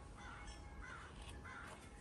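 A crow cawing faintly, four or five short calls in quick succession.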